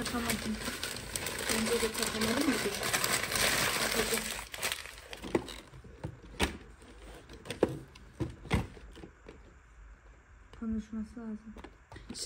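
Brown paper crinkling and rustling for about five seconds as it is handled, then three sharp clicks spaced about a second apart while the robot vacuum is being handled.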